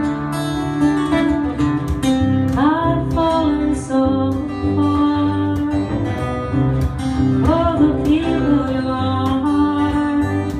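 A woman sings a slow folk song into a microphone over two acoustic guitars picking and strumming. Her held notes slide upward twice, about a quarter of the way in and again about three quarters in.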